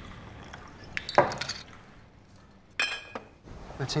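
Whiskey poured from a bottle into a glass tumbler over ice, with glass clinks: a sharp knock about a second in and a ringing clink near three seconds.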